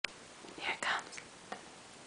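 Someone whispering a few breathy syllables, about half a second in. A sharp click comes at the very start.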